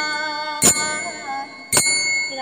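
Bengali devotional song: a voice holds a wavering melody over sharp, ringing metallic strikes, bell-like, about once a second, two of them here.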